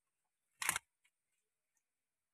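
Mostly quiet, broken once by a single short, sharp sound about two-thirds of a second in.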